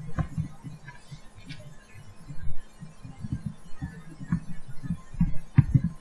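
Keyboard typing picked up as a run of dull, irregular low thumps, several a second, over a faint steady hum.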